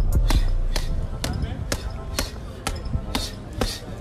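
Medicine ball thrown against a concrete block wall and caught, repeating in a steady rhythm of knocks about two a second.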